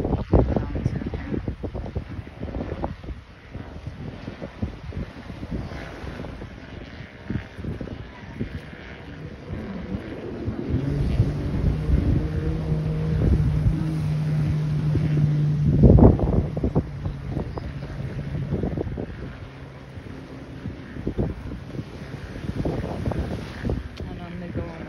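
Jet ski engine running at a steady, even pitch as it pulls a sled away from the shore, heard from about ten seconds in and fading out by about nineteen seconds. Gusty wind buffets the microphone throughout, loudest in a sharp gust about sixteen seconds in.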